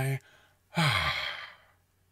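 A man's voiced, breathy sigh, sliding down in pitch for about a second, demonstrated as a vocal warm-up exercise.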